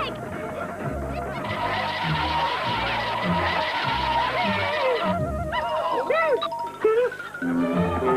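Cartoon background music, with a long rushing noise through the middle. A few swooping pitch glides follow near the end.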